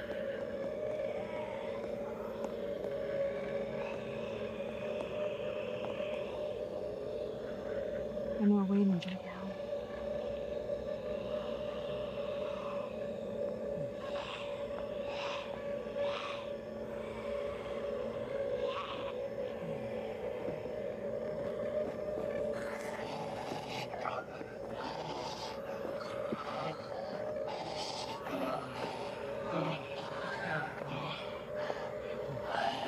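Horror film soundtrack: a steady low drone of suspense music under zombie groans and snarls, with one loud falling growl about eight seconds in and scattered scuffs and clicks later on.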